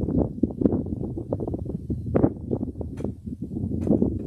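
Wind buffeting an open handheld microphone, a choppy low rumble, broken by knocks and rustles of handling as the microphone and music stand are moved.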